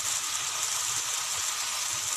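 Chopped tomatoes with garlic and onion sizzling in hot oil in a frying pan: a steady hiss.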